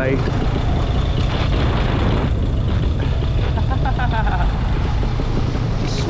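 Paramotor engine and propeller running, a steady loud drone mixed with wind noise on the microphone while the wing is swung through a banking swoop.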